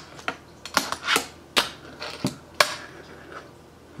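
A fingerboard being popped, flipped and landed on a tabletop and a box obstacle during a trick attempt: a string of sharp wooden clacks from the deck and trucks, some with short scrapes of the wheels or deck, the loudest about two and a half seconds in.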